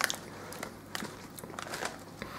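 Quiet, scattered crackles and clicks of a plastic crisp packet being handled and lifted to the nose.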